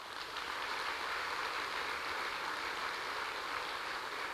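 Audience applause, swelling in the first half second and then holding steady.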